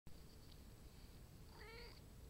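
A Japanese Bobtail cat gives one faint, short, wavering meow about one and a half seconds in.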